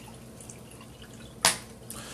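Water poured from a plastic bottle into a stemmed glass, trickling and dripping, with one sharp click about a second and a half in.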